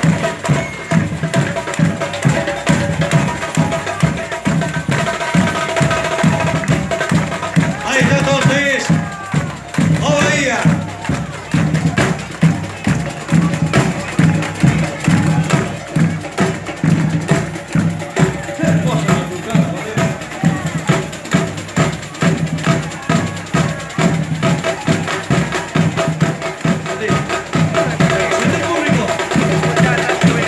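A carnival batucada, a samba-style drum section, plays a steady, driving rhythm, with deep drum beats about twice a second under lighter percussion.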